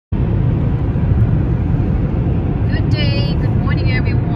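Steady low road and tyre rumble of a car driving at highway speed, heard from inside the cabin. A high voice comes through briefly about three seconds in and again near the end.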